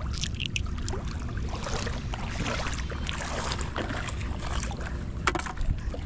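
Wind rumbling on the microphone over light splashing and sloshing of shallow seawater as hands dig through the sandy bottom for clams, with a sharper click about five seconds in.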